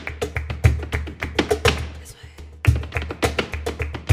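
Flamenco footwork (zapateado): the dancer's shoes strike the stage in fast rhythmic runs, accompanied by palmas hand-clapping. The strikes thin out briefly a little past halfway, then resume strongly.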